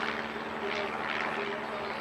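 Propeller drone of a small single-engine banner-towing plane passing overhead, steady and distant.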